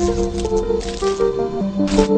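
Music: a melody of held notes over a steady low drone note, with short noisy percussive bursts, the loudest near the end.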